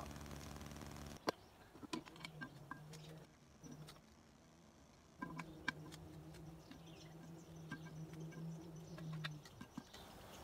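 Metal tongs setting charcoal briquettes on a cast-iron Dutch oven lid: scattered light clicks and clinks, one sharper about a second in. A faint steady low hum runs beneath, strongest in the first second and again over the second half.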